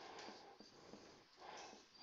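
Faint scratching of a marker pen on a whiteboard, in short strokes while a fraction bar and "2x²" are written; otherwise near silence.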